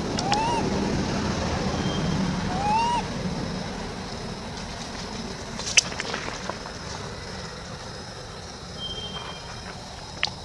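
Infant long-tailed macaque giving two short coo calls, each rising then falling in pitch: one right at the start and one about three seconds in. They sit over a steady low rumble, and a single sharp click comes near the middle.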